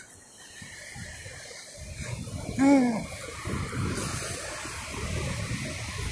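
A low, uneven rumble of outdoor noise on a phone microphone at the beach, most likely wind and distant surf, building up about two seconds in, with a man's short "oh" partway through.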